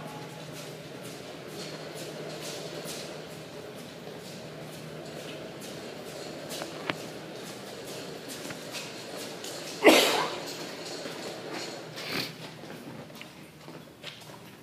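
Faint rustling and clicking of stranded electrical wire paying off a hand-held wooden reel and dragging over concrete as it is walked out. A short, sharp noise stands out about ten seconds in.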